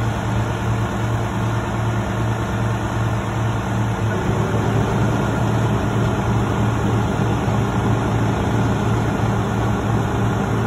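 Heavy truck's diesel engine running at a steady speed, its note shifting and growing a little louder about four seconds in.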